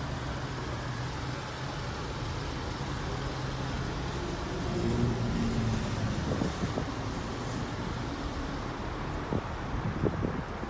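Steady low hum of a running vehicle engine with outdoor traffic noise. It swells briefly about five seconds in, and a couple of soft knocks come near the end.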